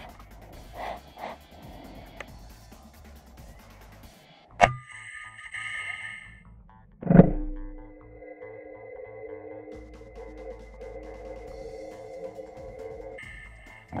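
A shot from an FX Impact MK2 PCP air rifle: a sharp crack about four and a half seconds in, then a louder thump about seven seconds in. Background music of held, sustained tones runs under them.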